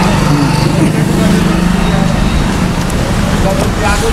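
Road traffic: a steady engine hum from passing vehicles, with faint voices underneath.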